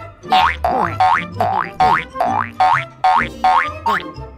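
Cartoon 'boing' sound effect for a bouncing ball, repeated about ten times at roughly two and a half a second, each a springy rising glide, over background music with a low bass line.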